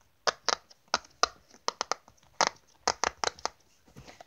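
Silicone pop-it fidget toy being pressed with the fingers: a dozen or so sharp little pops at an irregular pace, some in quick runs of two or three.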